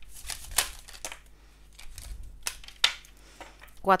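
Tarot cards being handled and drawn from the deck: crisp card-stock flicks and slides with several sharp snaps and taps as cards are laid on the table.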